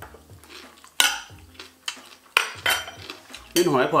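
Metal cutlery clinking and scraping on plates, with a few sharp clinks about a second in and again about two and a half seconds in.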